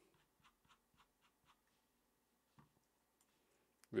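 Near silence with faint, scattered clicks from a computer mouse scrolling and selecting text: a quick run of ticks in the first second and a half, then a few single clicks later.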